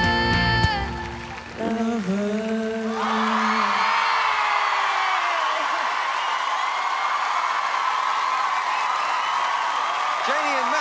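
A pop song with band ends about a second in, followed by a final held sung note. From about three seconds in, an audience applauds and cheers steadily.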